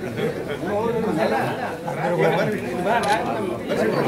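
Crowd chatter: several people talking at once, overlapping, with no single voice standing out.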